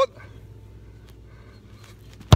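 Quiet open-air background with a steady low rumble, and a faint sound near the end.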